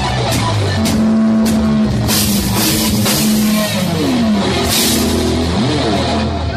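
Heavy metal instrumental passage: guitar holding long notes and bending pitch over a drum kit, with cymbal crashes about two seconds in and again near five seconds.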